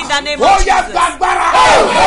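A man's loud, shouted speech, his voice strained and rising and falling in pitch as he preaches or prays.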